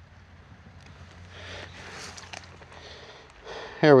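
Fingers picking through crumbly rotten wood and debris to catch a small salamander: a soft rustle and scrape with a few faint small clicks.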